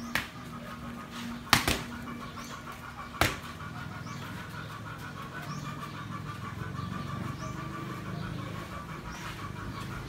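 Boxing gloves smacking onto a trainer's pads or body in three sharp hits about a second and a half apart, near the start. A steady rapid chirping runs underneath.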